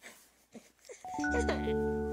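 Background music begins about a second in: held notes enter one after another and build a sustained chord over a deep bass note, the opening of a slow ballad. A few faint spoken sounds come before it.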